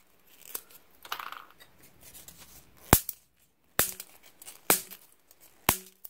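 Sooksookkang craft sticks snapped by hand into small pieces: about five sharp snaps, roughly a second apart, with a soft crinkly rustle about a second in.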